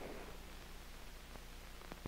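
Faint background noise of an old 16mm film print's soundtrack: steady hiss with a low hum and a few soft clicks.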